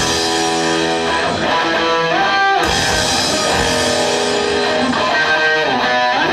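Electric guitar playing an amplified lead line in a rock/metal style: held notes with pitch bends and slides, over a full backing.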